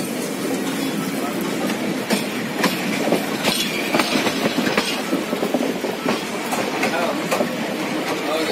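Passenger train coaches running along the track, heard from inside a carriage: a steady rumble of wheels on rail with irregular sharp clacks as the wheels strike rail joints.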